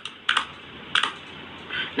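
A few light clicks, like keys being tapped, over a faint steady hiss.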